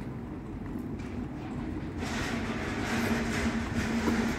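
A white DAF lorry passing close by, its diesel engine and tyres getting louder about halfway through, with a steady engine hum coming in near the end.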